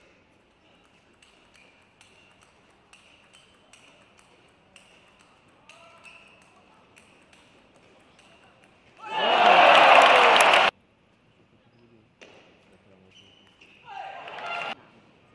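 Table tennis rally: the celluloid-type ball clicks off rackets and table in a steady back-and-forth, roughly one hit every second. A little after nine seconds in, a loud burst of crowd cheering lasts under two seconds and cuts off abruptly.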